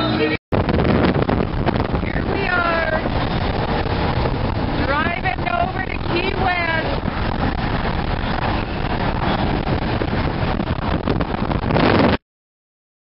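Steady wind and road noise inside a car moving at speed with the sunroof open. Short bursts of voices come through it three times.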